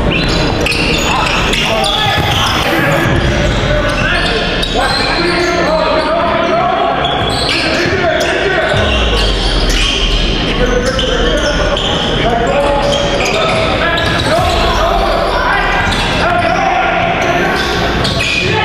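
Live basketball game in a gym: voices of players and coaches calling out and echoing in the hall, with the ball bouncing on the hardwood court now and then.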